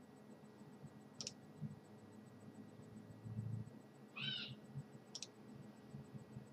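Faint computer mouse clicks, two sharp clicks about four seconds apart. Between them come a low bump and then a short high chirp.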